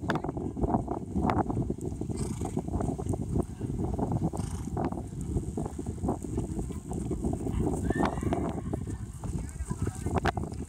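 A horse moving on turf, with soft, irregular hoofbeats, over a steady low rumble of wind on the microphone.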